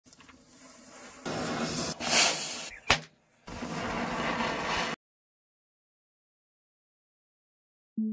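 A chain of matchsticks burning and the fireworks at its end lighting off: a faint rising fizz, then loud hissing of spraying sparks with one sharp crack about three seconds in. The sound cuts off suddenly about five seconds in.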